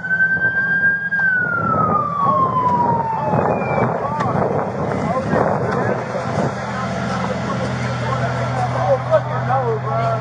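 An emergency vehicle siren holds a high pitch for about a second, then falls steadily over the next two seconds as it winds down. Under it runs a steady low engine hum that grows stronger in the second half, with scattered distant voices.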